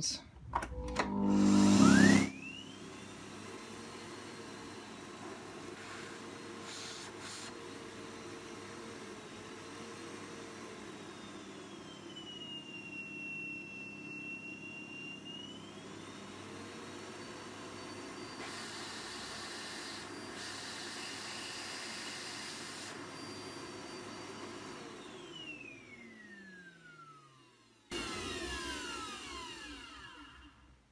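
Morphy Richards Perform Air Pets Cyclonic bagless cylinder vacuum cleaner switched on with its hose detached, just after a blockage has been cleared from the hose. Its motor whines up to speed within about two seconds and runs steadily, with a dip in pitch for a few seconds around the middle. It is then switched off and winds down with a falling whine, followed by a brief noise near the end.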